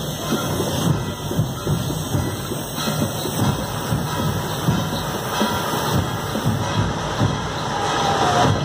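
Loud, continuous drumming with many dense low strokes and no pause, over the noise of a street crowd.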